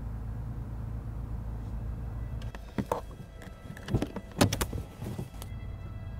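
A car's engine running at idle, then switched off about two and a half seconds in, followed by a quick run of clicks and knocks as the driver's door is unlatched and opened.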